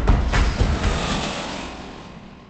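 A loud rushing roar with a deep rumble, like a jet or vehicle pass-by sound effect. It starts suddenly and fades away over about three seconds.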